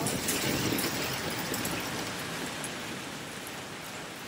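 Heavy rain falling, a steady, even hiss.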